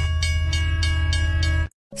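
Train sound effect: a steady, loud train horn blast over a rhythmic clatter of about four beats a second, cut off abruptly near the end, as a train bears down on someone standing on the tracks.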